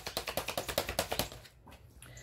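Tarot cards being shuffled: a fast run of crisp card clicks, about a dozen a second, that fades out about a second and a half in.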